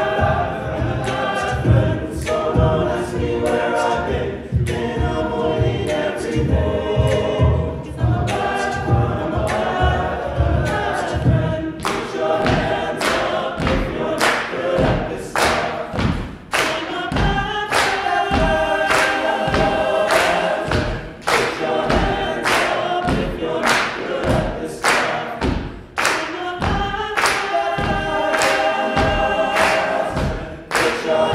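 An all-male a cappella group singing close chords over a steady beat of vocal percussion. The low bass voice drops out about twelve seconds in, leaving the chords and the beat.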